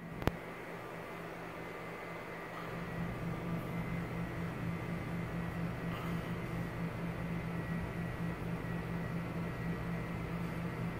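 Steady low mechanical hum with a faint high whine, growing a little louder about two and a half seconds in. Two sharp clicks sound right at the start.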